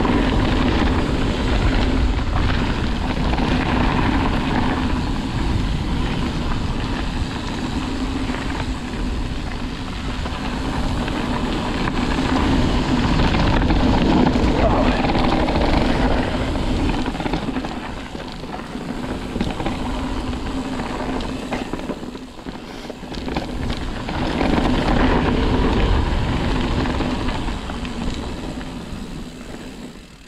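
Mountain bike rolling fast down a dirt trail: steady tyre noise with constant rattling and clattering of the bike over bumps, and a low rumble from wind on the microphone. The sound drops away sharply near the end.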